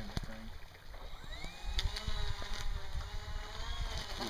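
Motors of a twin-propeller RC model Canadair water-bomber flying boat spooling up about a second in: a rising whine that then holds steady as the model runs across the water.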